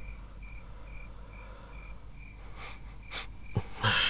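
Cricket chirping steadily, about two short high chirps a second. A few sharp knocks come in the last second and a half.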